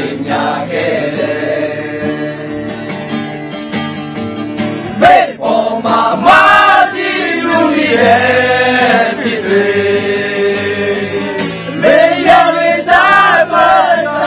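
A group of men singing together in chorus, many voices on one melody, with the phrases swelling louder about halfway through and again near the end.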